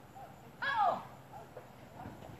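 A single short vocal call a little over half a second in, falling steeply in pitch, with faint shorter sounds around it.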